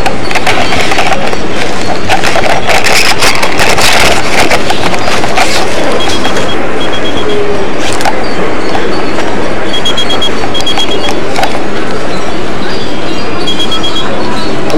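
Loud, steady rustling and crackling from handling noise on a body-worn camera's microphone, over mall crowd noise. Faint pairs of short high electronic beeps repeat every few seconds, like a mobile phone ringing with an incoming call.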